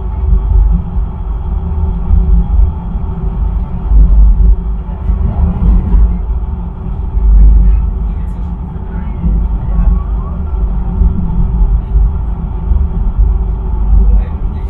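Gurtenbahn funicular car running up its track, heard from inside the car: a steady low rumble with a faint hum.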